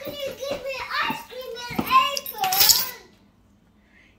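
A young child talking in a high voice for about three seconds, then stopping.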